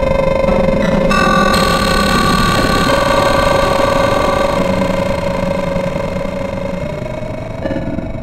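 Prophanity, a software emulation of the Sequential Circuits Prophet 5 synthesizer, playing sustained notes and chords that shift every second or two over a noisy, rumbling low end. The level dips near the end.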